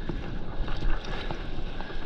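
Wind buffeting the microphone over water rushing and splashing around a stand-up paddleboard moving through whitewater.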